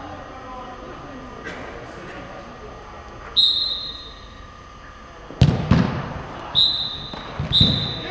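Referee's whistle blown over a five-a-side pitch: one blast about three seconds in, then two short blasts near the end. A ball is kicked hard about five and a half seconds in, with lighter thuds of play after it.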